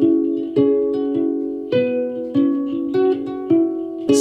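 Homemade electro-acoustic stool krar, a six-string lyre after the Ethiopian krar, plucked one string at a time. Each note rings on, with a new note about every half second.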